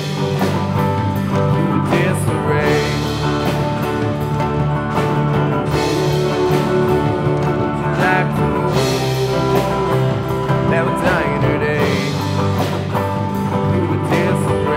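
Live rock band playing: electric guitar and bass over a drum kit played with bundled rod sticks, with a steady, full sound.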